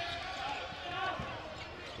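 Basketball game ambience in an arena: a steady hum of crowd noise with a basketball bouncing on the court.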